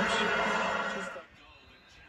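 Soccer TV broadcast audio, a commentator's voice, that cuts off abruptly about a second in, leaving only a faint, quiet background.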